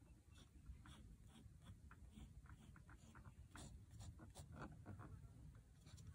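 Faint scratching of a Sakura Pigma Micron 02 fineliner drawing short, irregular strokes on sketchbook paper, over a low steady room hum.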